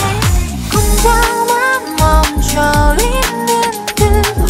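K-pop mashup track: a sung vocal melody over a pop/R&B beat, with deep bass notes that slide downward about once a second and regular drum hits.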